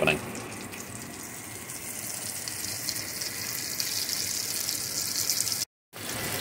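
Breaded pork cutlets sizzling in hot oil in a frying pan, a steady sizzle that grows slightly louder, with a brief dropout just before the end.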